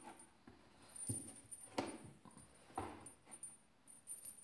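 Siamese cat moving about inside a cardboard cat house: a few soft bumps and scuffs against the cardboard about a second apart, with a faint metallic jingle from a small dangling toy.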